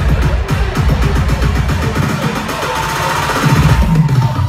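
Dubstep/riddim DJ set playing loud over a club sound system, with a fast, choppy bass rhythm. About halfway through, the deep bass drops away and the higher sounds grow louder.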